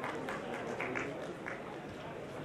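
Scattered audience clapping, a few irregular claps over a low murmur of voices in a hall.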